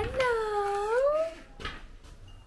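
A Ragdoll cat giving one long, drawn-out meow that rises in pitch at its end, lasting about a second and a half.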